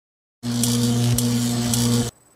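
A loud electric buzzing sound effect, a steady low hum with a hissing crackle and a few sharp clicks, which starts suddenly about half a second in and cuts off abruptly: a comic electric shock.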